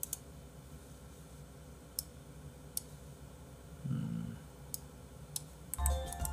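Computer mouse clicks: about six single sharp clicks, spaced irregularly a second or so apart, as a web page is scrolled.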